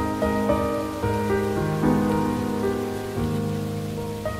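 Slow, soft instrumental music, sustained notes and chords changing every second or so, laid over a steady hiss of falling rain.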